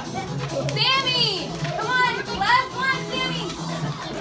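Young children's high-pitched voices calling out and chattering over background music with a steady low pulse.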